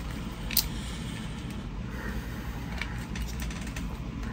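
Handling noises from a soft-rubber and plastic Battle Cat action figure being posed: faint rubbing and a few small clicks, the clearest under a second in, over a low steady hum.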